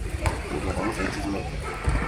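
Large fire burning across the street: a steady rushing noise with a couple of sharp cracks, one near the start and one near the end.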